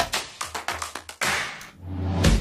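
Short TV segment-transition jingle: music built on sharp percussive hits over deep bass drum beats, with a whoosh-like swell about a second and a half in.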